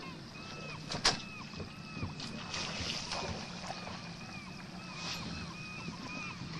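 A flock of birds calling over and over in short rising-and-falling calls, several a second, over the low steady hum of a boat's motor. A sharp knock sounds about a second in.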